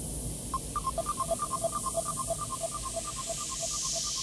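Quiet breakdown in a progressive psytrance track: a soft synth noise wash over a low rumble. About half a second in, a sequenced pattern of short, bright synth blips enters on two alternating pitches, pulsing about three times a second.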